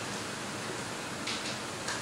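Steady hiss of room noise in an auditorium, with a couple of faint brief rustles in the second half.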